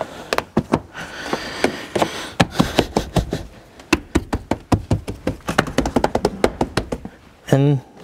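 Plastic car interior trim panels and clips being pushed and snapped back into place on the door pillar: a quick, uneven run of clicks, taps and knocks, with a rustling scrape during the first few seconds. A short voice sound comes near the end.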